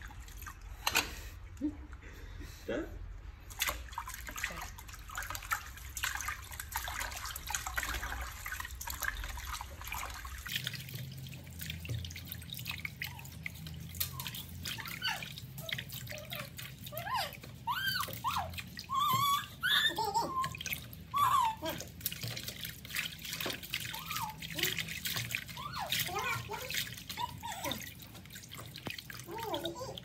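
Water splashing and sloshing in a plastic basin as hands swish and rinse lettuce leaves in a sink, with drips as the leaves are lifted out. Indistinct voices in the background through the second half.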